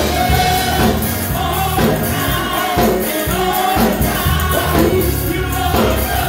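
Live gospel singing by a church praise team, several voices together over instrumental backing with a steady beat.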